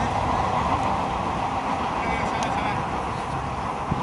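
Ambience of a soccer match in play: distant players' voices over a steady rushing background noise.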